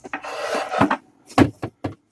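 Wooden toy play kitchen being handled by a child: a short scraping rub, then three sharp knocks in quick succession as its small door and parts are moved.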